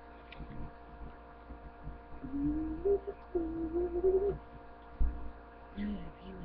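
Steady electrical mains hum, with a person humming or whining two drawn-out notes in the middle, the first rising, and a single dull thump near the end.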